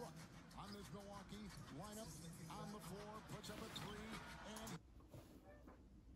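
Faint male basketball commentary over arena crowd noise from a game broadcast playing quietly in the background, cutting off abruptly about five seconds in.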